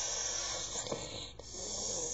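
A child making a hissing jetpack sound with the mouth, a long breathy rush with a short break about one and a half seconds in.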